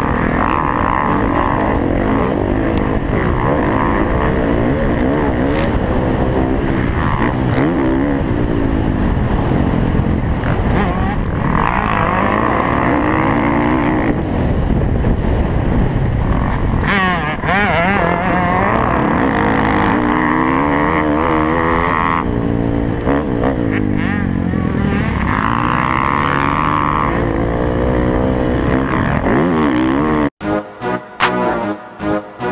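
Dirt bike engine ridden hard on a motocross track, revving up and dropping back over and over through shifts and turns, heard from a camera mounted on the bike.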